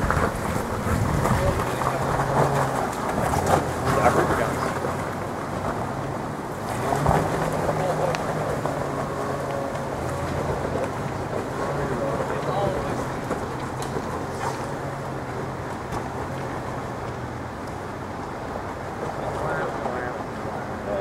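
Off-road vehicle engine running at low revs as it crawls up a rocky trail, a steady low drone.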